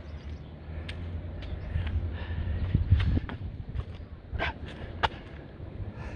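A man doing a burpee in a weight vest on an exercise mat: movement, thuds and hard breathing, with a low rumble through the middle and two short sharp sounds near the end.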